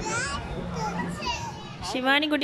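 Children's voices at a playground, several short high-pitched calls and chatter.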